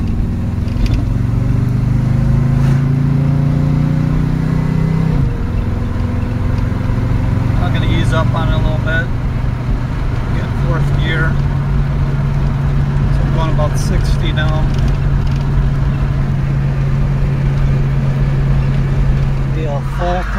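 Car engine heard from inside the cabin, pulling at part throttle with its pitch rising, then dropping suddenly about five seconds in as the GM automatic transmission upshifts; from about ten seconds in it holds a steady pitch while cruising. This is a part-throttle shift test with a lighter governor weight fitted to raise the shift points.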